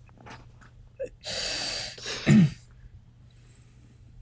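A person's breath rushing out for under a second, then a brief low falling vocal sound, with a few faint clicks over a low steady hum.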